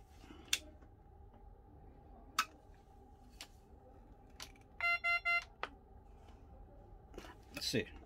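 Magnamed OxyMag transport ventilator restarting into demo mode: two sharp clicks from its buttons in the first half, then, just after the start-up screen, three short electronic beeps in quick succession about five seconds in, followed by another click.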